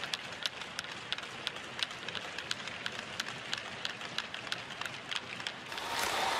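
Hockey rink ambience: scattered sharp taps of sticks and skates on the ice, a few a second and irregular, over a steady hiss.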